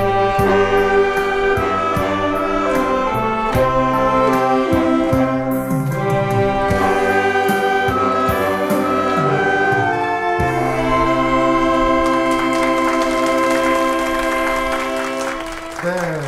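Saxophone ensemble playing a slow song in harmony over a steady ticking beat, then closing on a long held final chord from about ten seconds in that fades near the end.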